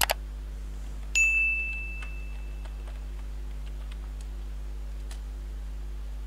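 A quick double mouse click, then about a second later a single bright bell-like ding that rings out and fades over a second or so: the sound effect of a subscribe-button animation. A few faint clicks follow over a steady low hum.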